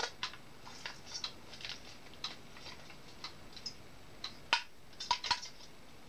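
Scattered light clicks and taps of a diecast model truck's small metal and plastic parts being handled as someone struggles to fit it back on, the loudest tap about four and a half seconds in, with a few quick ones just after.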